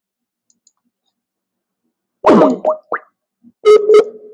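Comic sound effects: after about two seconds of silence, a quick falling 'boing'-like sweep and two short rising chirps, then two short pitched beeps near the end.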